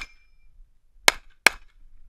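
Two pistol shots from a Sig Sauer 1911, fired about a third of a second apart a little over a second in. A faint ringing tone from the previous shot fades in the first half second.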